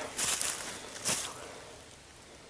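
Footsteps crunching and rustling in dry fallen leaves: a couple of brief crackly crunches in the first second or so, then fading away.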